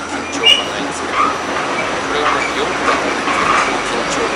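Inside a running New York City Subway A train car: a steady rush of wheel and track noise, with a few sharp clicks.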